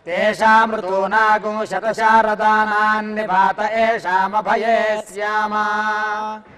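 Male voice chanting Sanskrit Vedic blessing mantras in a steady recitation, over a continuous low held tone.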